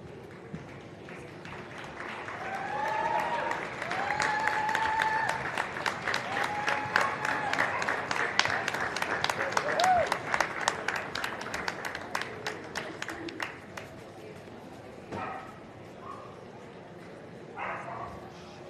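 Dog-show audience applauding, with a few cheering whoops over the clapping. The applause builds about two seconds in and dies away by about twelve seconds.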